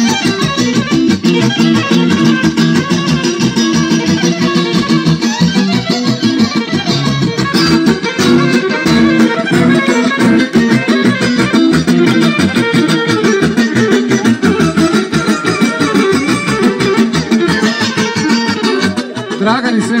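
Loud, fast Serbian Roma dance music with a prominent guitar lead, played over amplification. Near the end the music drops back and a man's voice begins an announcement.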